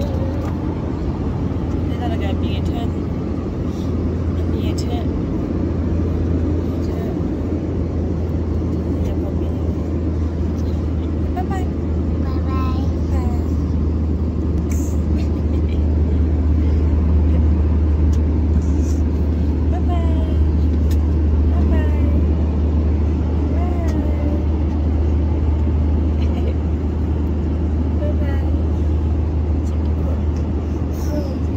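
Steady low drone of an airliner cabin, the engine and airflow noise heard from inside, swelling slightly about halfway through. A toddler makes a few short squeals and babbling sounds over it.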